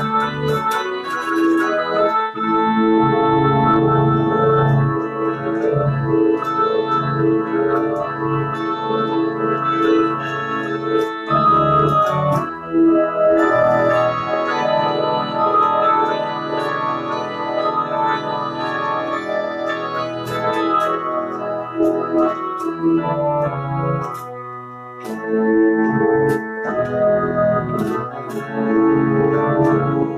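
Organ with a pipe-organ sound played solo: a tune in sustained chords over a held bass line, thinning briefly about three quarters of the way through before the full chords return.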